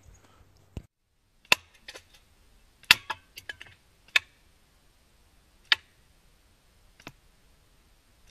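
Slingshot shots at double speed: about eight sharp clacks at uneven intervals as 3/8 ammo strikes the cans, board and catch box, some hits leaving a brief metallic ring.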